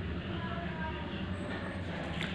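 A steady low hum or rumble with no speech over it.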